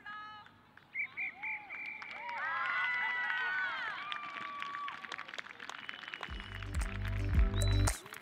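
High-pitched shouts and calls from a group of women's voices on an open pitch, several voices overlapping in a shout together a few seconds in. About six seconds in, music with a heavy bass beat starts and takes over.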